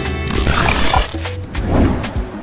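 Radio show intro jingle: loud music with a deep bass line and a noisy sound-effect sweep in the first second.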